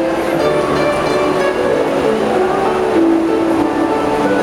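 Two harps played together as a duet, a steady flow of plucked notes ringing into one another.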